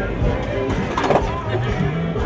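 Background music with a singing voice.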